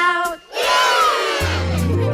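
Recorded children's action song ending on the words "shout out": the last sung notes fade, then a crowd of voices shouts and cheers over the music, with a low bass note coming in near the end.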